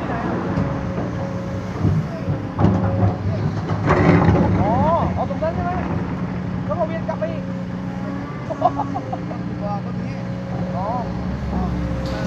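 Caterpillar hydraulic excavator's diesel engine running steadily under load as it digs soil and loads a dump truck, with a louder noisy surge about four seconds in.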